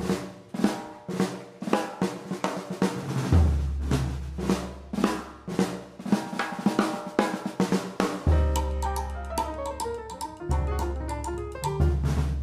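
Jazz group of two pianos, double bass and drum kit opening a tune: chords and drum hits struck in a steady rhythm, with low bass notes coming in a few seconds in and quicker, busier piano notes from about eight seconds.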